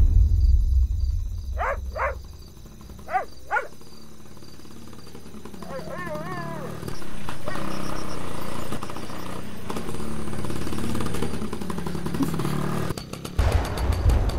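Small motor scooter engine running steadily as the scooter rides along, coming in about halfway through, over a steady high chirring of night insects. Before it come four short rising calls in two pairs and a brief wavering call.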